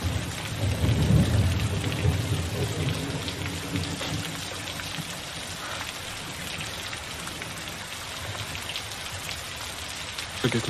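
Heavy rain falling steadily, with a low rumble of thunder in the first few seconds.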